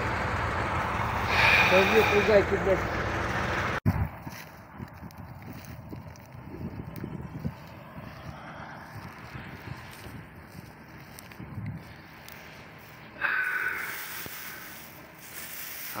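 An engine running steadily, with faint voices over it, cuts off abruptly about four seconds in. It gives way to a quieter open-air background of wind on the microphone, with a brief voice near the end.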